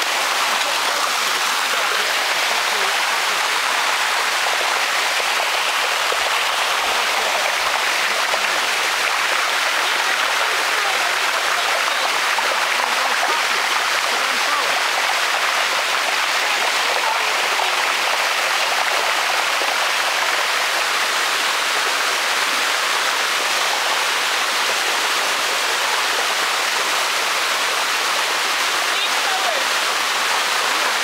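Shallow water rushing steadily over the limestone cascades of a waterfall, a constant even rush with no breaks.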